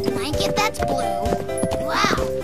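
Cartoon soundtrack: a tune played with clip-clop hoofbeat sound effects for a galloping horse, and a brief rising and falling cry near the end.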